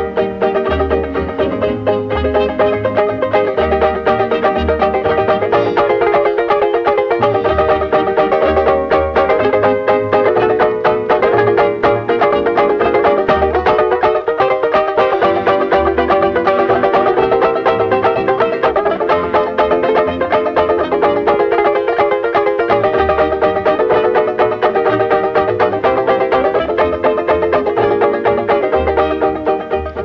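Instrumental break of a comic song with no singing: a ukulele-banjo leads over a band accompaniment, with a repeating bass figure underneath.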